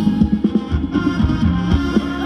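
Live Thai ramwong dance band music: a steady, loud drum beat with pitched instruments playing a melody over it.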